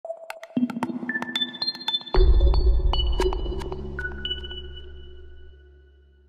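Electronic logo sting: sharp clicks and high pinging tones, then a deep bass hit about two seconds in that fades away slowly.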